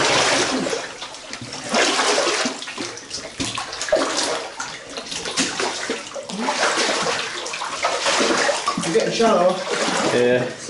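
Footsteps wading through shallow water in a rock tunnel: repeated, irregular splashing and sloshing with each stride.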